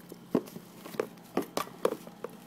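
A handful of short, light knocks and taps, about five in two seconds, from plush toys and small toy props being handled and set down.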